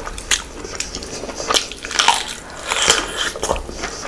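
Close-miked mukbang eating sounds: chewing and wet mouth clicks of a person eating rice with curry, along with fingers mixing rice on the plate. The clicks come irregularly, several a second.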